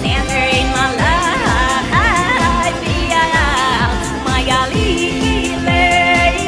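Pop song performed live, a woman singing a lead vocal with sliding, ornamented notes over a band and a steady kick-drum beat.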